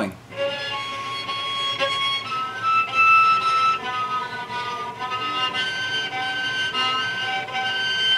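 Cello played in natural harmonics: a bowed string lightly touched at successive nodes, giving a run of high, clear, flute-like notes that change pitch every second or so.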